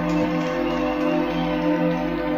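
Beatless live electronic music: sustained synthesizer chords holding steady.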